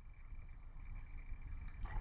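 Quiet room tone: faint steady hiss, with a couple of faint clicks near the end.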